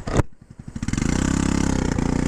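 Honda Ruckus scooter's straight-piped single-cylinder engine idling, with a sharp click a moment in. The revs then climb as the throttle opens and the scooter pulls away, running steadily.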